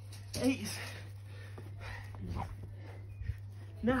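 A man's short voice sound with falling pitch about half a second in, and a fainter one a little after the middle, over a steady low hum.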